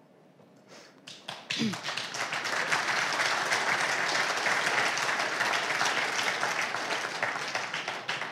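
An audience applauding: after about a second of quiet the clapping builds quickly, holds steady and starts to die away near the end.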